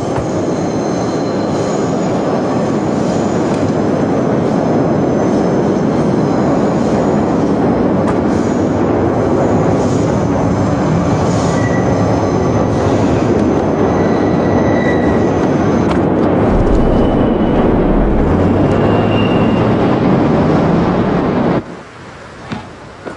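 A loud, steady rumble with thin high squealing tones over it; a low hum rises about three-quarters of the way through, and the whole sound cuts off abruptly just before the end.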